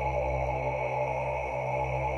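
Steady held synthesizer tones over a low electronic drone, with no change in pitch or level: sustained ambient synth music.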